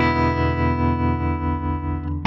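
Intro music: a held electric guitar chord ringing out, thinning and fading near the end.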